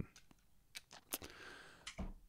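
Faint handling noise in a small room: a few scattered sharp clicks and a short soft rustle over quiet room tone.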